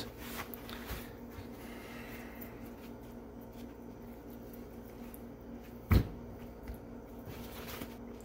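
Gloved hands patting and rubbing paper towel over a raw spatchcocked Cornish hen to dry its skin, a faint rustling, with one sharp knock about six seconds in, over a steady low hum.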